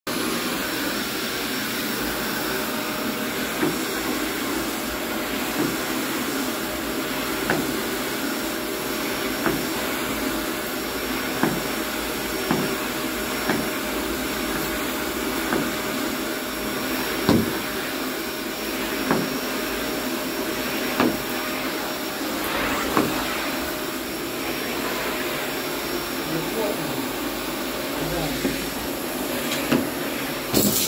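A canister vacuum cleaner running steadily with a faint whine, its floor nozzle on the end of a wand and hose being worked over carpet. Short clicks come about every two seconds.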